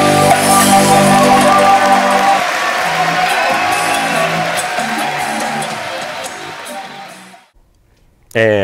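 A live reggae band holds a ringing final chord on keyboards, bass and guitar. It slowly dies away and fades to silence near the end.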